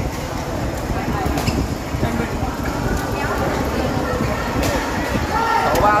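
Badminton rackets striking a shuttlecock in a rally, a few sharp hits a second or more apart, over steady chatter from people around the court. A voice calls out near the end.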